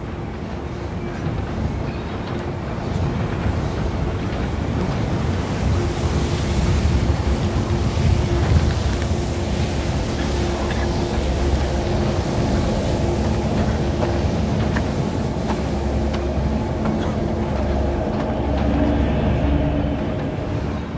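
A low, steady mechanical rumble with sustained humming tones, heavy-machinery-like, swelling slightly a few seconds in. Faint scattered light taps sit within it.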